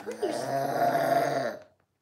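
A toddler making a long, low, gravelly animal noise in play, held for about a second and a half, then cutting off.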